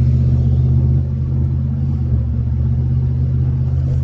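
Steady low drone of a car's engine and running gear heard inside the cabin, easing slightly about a second in.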